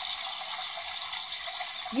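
A steady, thin hiss of rushing water, even throughout with no separate events.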